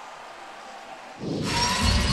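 The noisy tail of an intro sound effect, steady and fairly faint, then a little over a second in a sudden cut to louder arena sound from the game broadcast, with a deep rumble underneath.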